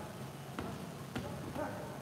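Boxing gloves smacking as punches land in a sparring exchange: two sharp hits about half a second apart, then a brief pitched sound near the end, over a steady background hum.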